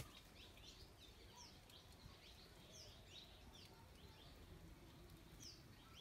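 Faint bird chirping: many short, high chirps, each dropping quickly in pitch, several a second, over a quiet low background.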